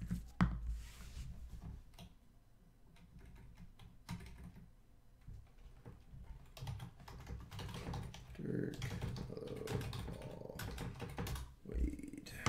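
Computer keyboard typing: scattered light key clicks, with a sharper knock about half a second in.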